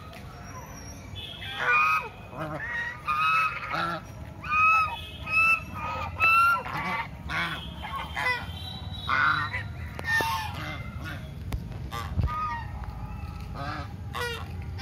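A small flock of white domestic geese honking: many short, nasal calls in quick succession, loudest in the first half and thinning out toward the end.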